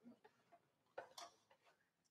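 Near silence in a concert hall, broken by a few faint clicks and taps as the seated wind ensemble handles instruments and stands before playing. Two of them come close together about a second in.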